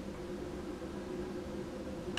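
Steady low room hum and hiss with no distinct sounds.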